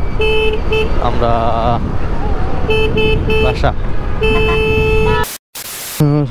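Vehicle horns honking in traffic: a run of short toots near the start, four more around the middle, then one long blast, over the steady road and wind noise of a moving motorcycle. Near the end the sound cuts out briefly, then a burst of loud rushing noise follows.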